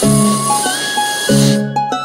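Cartoon sound effect of air being blown into a balloon, a hissing whoosh that stops about a second and a half in, over cheerful instrumental music.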